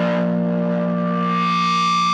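Music: a distorted electric guitar with effects holding a sustained chord, a higher note joining it about a second in.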